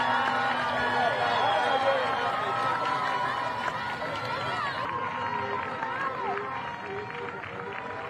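Many high-pitched voices shouting and cheering at once, as a goal is scored in a youth women's football match. The shouting thins out and gets quieter after about five seconds.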